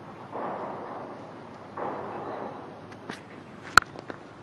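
A cricket bat striking the ball once, a single sharp crack near the end: a clean, powerful hit that the commentator calls a big blow, the ball clearing the boundary for six. Before it, faint ground noise rises and falls twice.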